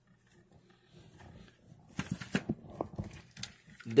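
Plastic cordless screwdriver bodies being handled, with a cluster of short clicks and knocks about halfway through as one tool is put down and another picked up.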